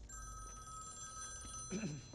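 Corded landline telephone ringing with a steady electronic tone. The ring cuts off about one and a half seconds in, and a brief low voice sound follows near the end.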